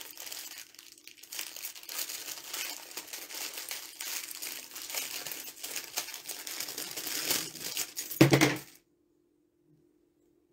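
Crinkling and rustling of small plastic jewelry packets and light clinks of costume jewelry handled at a table, with a louder thump a little after eight seconds in. The sound then cuts out abruptly.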